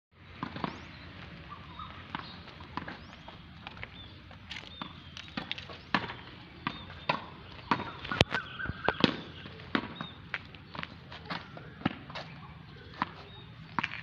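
Tennis ball hit repeatedly against a practice wall: sharp pops of the ball off the racket strings, knocks off the wall and bounces on the hard court, coming irregularly one to three times a second.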